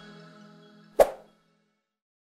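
Outro music fading out, then a single short pop sound effect about a second in.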